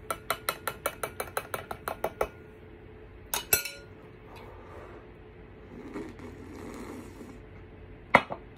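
Metal spoon stirring in a glass mug of hot cocoa, clinking quickly against the glass, about six strikes a second for the first two seconds. About three and a half seconds in come two louder clinks, followed by faint breathy blowing over the drink.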